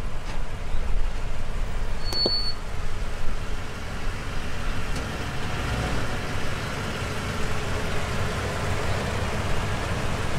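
Toyota pickup truck's engine running with a low rumble as the truck rolls slowly over asphalt. A short high beep and a click come about two seconds in.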